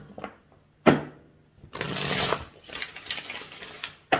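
A tarot deck being shuffled by hand: a sharp knock about a second in, then a dense riffle of cards for about a second and a half.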